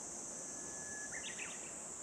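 Faint steady high-pitched drone of insects singing in a field, with a short bird call about a second in.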